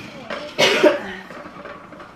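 A person coughing, loudest about half a second in, with a quieter burst just before.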